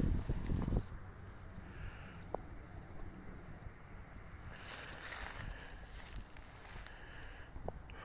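Wind buffeting the microphone, loudest in the first second, then a lower steady wind rumble with a brief faint hiss about halfway through.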